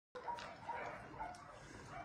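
A dog eating kibble from a ceramic bowl: faint chewing and crunching, with a few soft bites.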